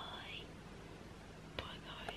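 A girl whispering softly: one short whispered phrase at the start and another near the end, with a small click just before the second.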